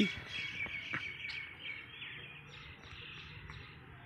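Small birds chirping faintly in a continuous chatter of many short, overlapping calls, with a single sharp click about a second in.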